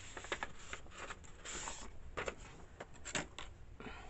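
Sheets of lined journaling paper being handled: light paper rustles and small taps, with a longer rustle about one and a half seconds in.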